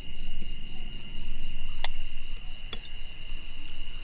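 Crickets and other insects chirping: a steady high ring and a fast, evenly pulsing chirp. Two brief sharp clinks about two and three seconds in are a spoon against a ceramic bowl as fish sauce is scooped.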